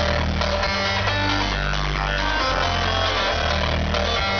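Trance music from a DJ set playing loud over a venue sound system, heard from among the crowd. Sustained bass notes change about once a second under a dense layer of synth.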